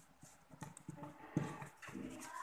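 Paper and hands pressing and creasing a folded origami sheet against a tabletop, heard as an irregular run of soft knocks. The loudest comes about one and a half seconds in.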